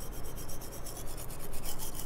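Teeth being brushed with a toothbrush: quick, even back-and-forth scrubbing strokes, several a second.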